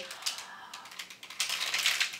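The plastic wrapper of a chewy protein bar crinkling as it is handled in the hands: a run of small crackling clicks, thickest at the start and again in the last half second.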